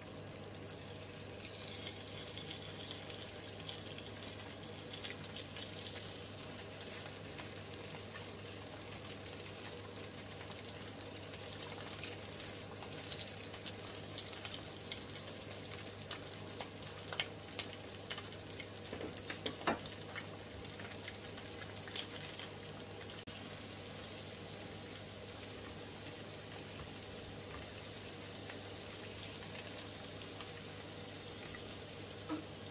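Mackerel fillets sizzling in hot oil in a frying pan as more fillets are laid in, the sizzle picking up about two seconds in. Scattered sharp pops and clicks come mostly in the middle, with a steady low hum underneath.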